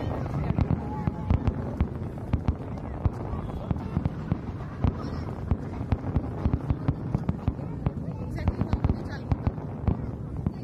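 Fireworks display: aerial shells bursting in an irregular barrage of bangs and crackles, several a second, over a steady rumble.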